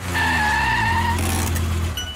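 Car sound effect for an animated logo: a low engine rumble with a tire squeal over it that falls slightly in pitch and stops about halfway through, the rumble dying away near the end.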